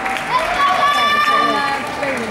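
People's voices in a busy, echoing arena crowd, with pitched, voice-like sounds that glide and one that holds for about a second in the middle.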